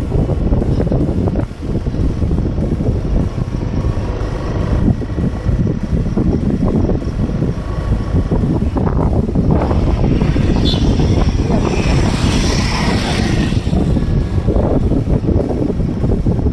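Loud, rough wind rumble on the microphone of a camera carried along on a moving bicycle, with road and traffic noise underneath and a brief rise in hiss about two-thirds of the way through.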